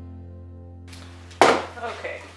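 Background music with plucked string notes fading out, then about one and a half seconds in a single sharp, loud clunk as a cordless brad nailer is set down on a wooden workbench.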